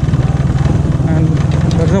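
Bajaj Pulsar 135 motorcycle's single-cylinder four-stroke engine running steadily as the bike is ridden down a steep dirt trail.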